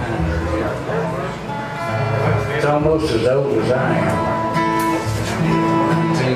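Acoustic bluegrass band playing: plucked upright bass notes under strummed acoustic guitars, with mandolin and lap-played resonator guitar.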